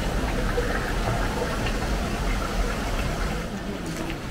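Steady rush of running water, with a low rumble underneath.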